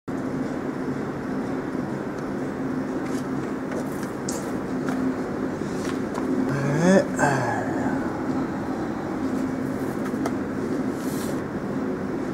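Wire mesh welding machine running: a steady mechanical hum with a faint tone, broken by scattered light clicks as the welded mesh feeds out onto its roll. About seven seconds in, a brief pitched sound rises and then falls.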